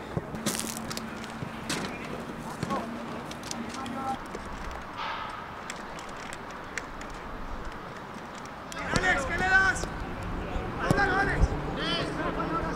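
Football training: a few sharp ball kicks in the first two seconds, then players shouting and calling out from about nine seconds in and again near the end.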